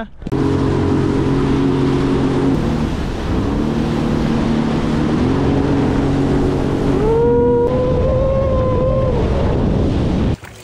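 Jet ski engine running at speed over loud rushing wind and water, its pitch shifting a few times and climbing about seven seconds in as it accelerates.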